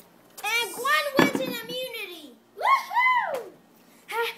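A child's voice making high, sliding squeals with no words, two of them rising and falling near the end, and a single thump about a second in.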